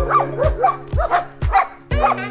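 German shepherd dog barking in a quick run of short barks, over background music with a steady beat about twice a second.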